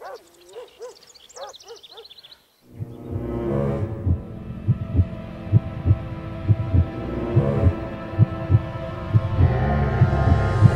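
Background music: faint wavering tones at first, then about three seconds in a sustained chord comes in over a low beat thumping about twice a second.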